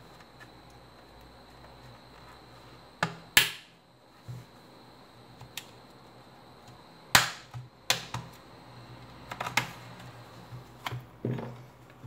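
Plastic snaps and clicks as the back cover of a Samsung Galaxy Tab 3 tablet is pried off its frame with a metal pry tool, the retaining clips letting go one at a time. About ten sharp clicks come at uneven intervals, the loudest about three seconds in and about seven seconds in.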